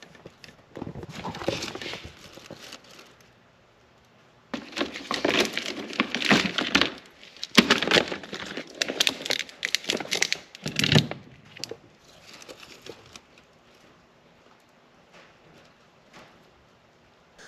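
Handling noise on a workbench: cables and plastic being moved about, crinkling and rustling with small clicks and knocks, in irregular spells with short quiet gaps.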